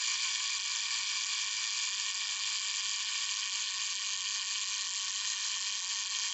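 FED 2 camera's mechanical clockwork self-timer running down after being set, a steady, quite loud buzzing whir from its escapement.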